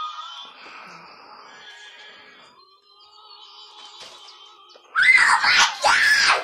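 A child's loud, high-pitched squeal about five seconds in, rising then falling in pitch and lasting a little over a second, after several seconds of faint background music and rustling.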